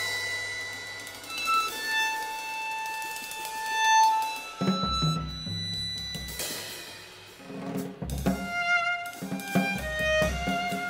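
Violin and drum kit duet. The violin holds long bowed notes, one swelling louder about four seconds in. Low drum hits come in about halfway through, and shorter violin notes with more drumming follow near the end.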